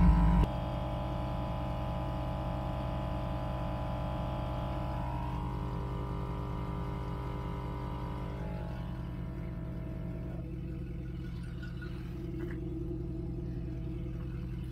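Twin-cylinder 12 V portable air compressor running steadily while inflating a tire, a low drone with a pitched hum above it. The level drops suddenly about half a second in, and the higher part of the hum fades out around ten seconds in.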